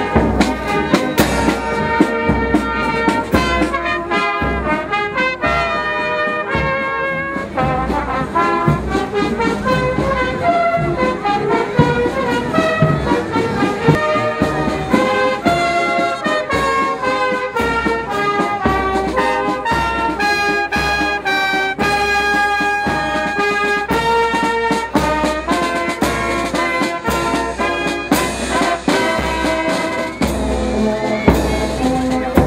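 Salvation Army marching brass band playing a tune on the march: cornets and horns carry the melody over snare drum, bass drum and cymbal strokes.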